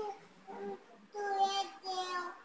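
A young girl's voice in drawn-out, sing-song sounds, held on a steady pitch in two or three stretches with short pauses between.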